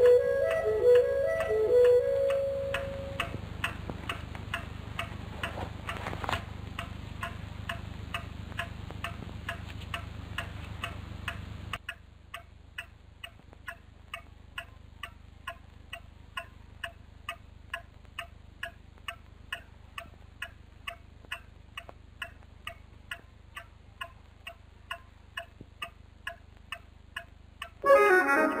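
Clock ticking steadily, about two ticks a second, after a short music phrase fades out in the first couple of seconds. A low hum under the ticking drops away about halfway through.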